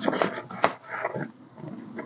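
Crinkling of a clear plastic zipper pocket in a cash binder and rustling of paper bills being handled, in a run of short, irregular crackles.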